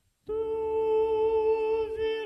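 Choir voices enter suddenly about a quarter second in and hold a chord on a hum, the pitches very steady.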